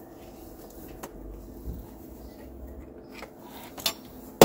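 A few isolated clicks and taps of a socket extension and hand tools against metal in an engine bay, with the sharpest click near the end, over a low steady background hum.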